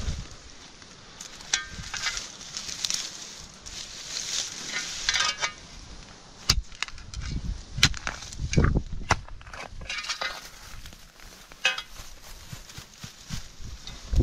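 Dry Japanese silver grass stems rustling and crackling as they are pulled and handled, with a small spade digging into gravelly soil at the base of a clump, giving several sharp clicks and crunches around the middle.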